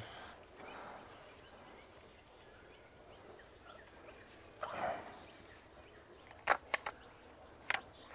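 Quiet, faint rustling of tomato foliage and string as a tall plant is handled and tied up. A short scuff midway and a few sharp clicks near the end.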